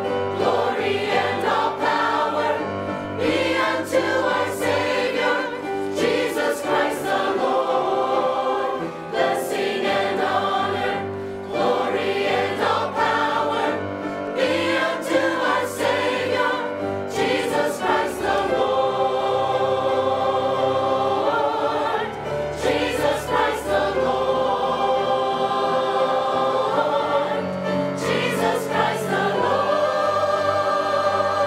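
Mixed church choir of men's and women's voices singing in parts.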